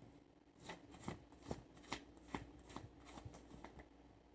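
A deck of cards being shuffled by hand, cards slipping from one hand to the other: a run of faint, quick taps, about two or three a second, starting just under a second in.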